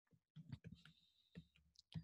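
Near silence broken by a few faint, short clicks: a stylus tapping down on a tablet screen as lines are drawn.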